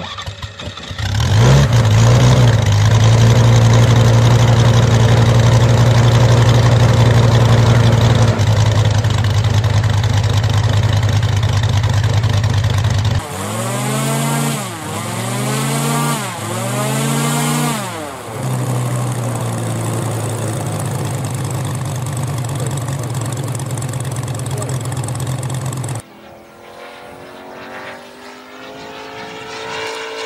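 A 250cc Moki five-cylinder radial engine on a large-scale model aircraft catching and then running steadily. Partway through, three throttle blips make the pitch rise and fall each time, then it runs steadily again. Near the end the sound drops to a quieter engine note.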